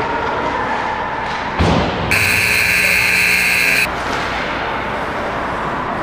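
Ice rink's electric buzzer sounding one loud, steady tone for nearly two seconds, starting about two seconds in. Just before it comes a sharp thump, and steady rink noise from skating play runs underneath.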